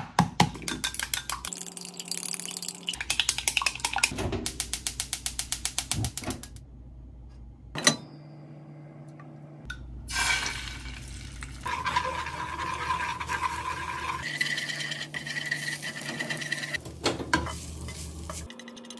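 An egg cracked into a glass jug and beaten fast with chopsticks, a rapid even clinking against the glass. About ten seconds in, the beaten egg is poured into a hot frying pan and sizzles as chopsticks stir and scrape it into scrambled egg.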